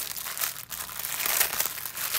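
Clear plastic packaging crinkling irregularly as a wrapped pack of diamond-painting drill bags is handled.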